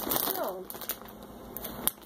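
A child's voice sounds briefly at the start, likely a laugh, then it goes quiet except for a few faint sharp clicks.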